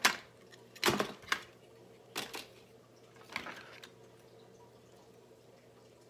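Small objects being handled and shifted on a desk: five short rustles and knocks in the first three and a half seconds, then only a faint steady hum.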